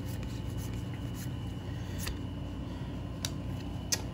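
Faint, scattered clicks and slides of Magic: The Gathering trading cards being flipped through by hand, over a steady low background hum.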